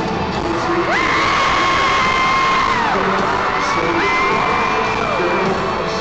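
Live country-rock band playing in an arena while the crowd cheers and whoops. Twice, a long high note slides up, holds for about two seconds and falls away.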